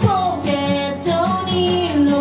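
Acoustic guitar strummed while a neck-rack harmonica plays a sustained, bending melody line.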